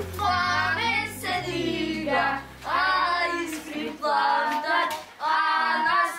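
A group of children singing a chant together in short phrases of about a second each, with a few claps.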